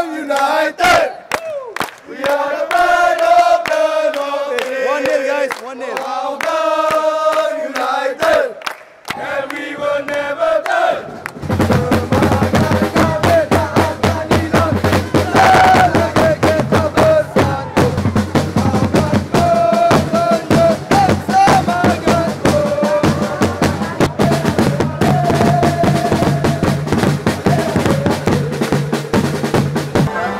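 Football supporters singing a chant in unison; about eleven seconds in, drums start beating fast under the singing crowd.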